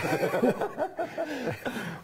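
Men chuckling and laughing.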